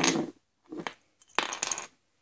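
Small hard plastic toy parts clattering on a hardwood floor: a light tap, then a brief rattle about a second and a half in.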